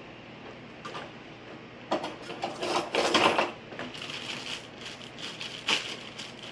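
Metal utensils clattering and rattling in a kitchen drawer as a hand rummages through it, in short bursts about two and three seconds in, with a last click near the end.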